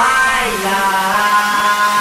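Guaracha DJ mix in a beatless build-up: held chords that shift in pitch a couple of times, with a faint rising sweep over them. No drums until the beat drops right at the end.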